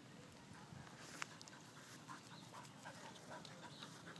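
Near silence with faint scattered scuffs and soft clicks, and one sharper click about a second in.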